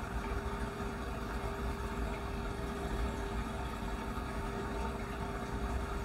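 Steady low machine hum with one faint constant tone, unchanging throughout.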